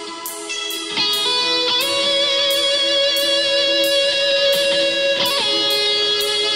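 Rock band playing: electric guitars hold long ringing chords that get louder about a second in, over a cymbal ticking about twice a second.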